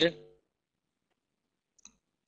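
Near silence: a man's spoken word fades out at the start, then the line goes dead, with one faint, short click near the end.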